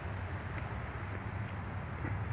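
Steady hiss of sleet falling, with a low hum underneath and a few faint ticks.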